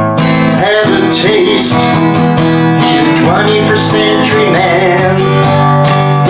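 Cutaway acoustic guitar strummed, ringing chords in a steady song accompaniment.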